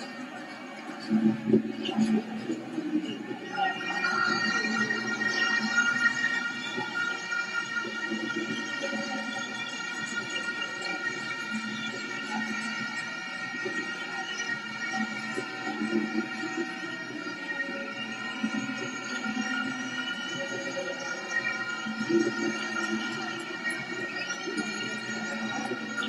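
Football stadium crowd sound: a low murmur of many voices, joined about three and a half seconds in by a steady drone of several high tones that holds without change.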